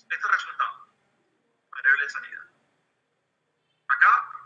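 Speech only: a voice in two short phrases, with complete silence between them.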